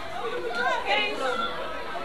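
Many children's voices chattering at once, overlapping with no one voice standing out.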